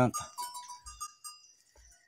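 Goats bleating faintly, dying away about a second and a half in.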